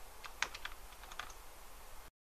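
A handful of faint, irregular clicks over a low steady hiss, about half a dozen in two seconds.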